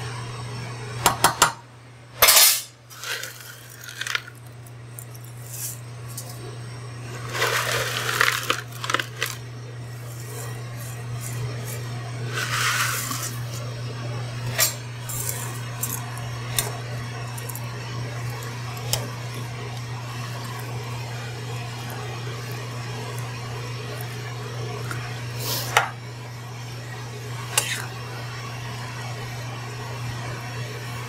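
A utensil knocking and scraping against an aluminium saucepan as freshly added spaghetti is stirred in boiling water, in scattered clinks and short scrapes, the loudest about two seconds in, over a steady low hum.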